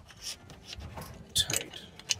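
Light metallic clinks and rustling from battery cables with ring terminals and a brass lug being handled, with a few short clicks, the sharpest about one and a half seconds in.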